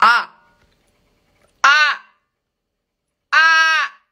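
A woman gives three loud "ah!" shouts about a second and a half apart, the last held steady a little longer. She is testing the echo of a bare-walled home recording room, and each shout leaves a short tail of room reverberation.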